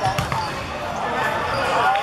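Basketball game sounds: a ball bouncing on the court with players' voices calling out.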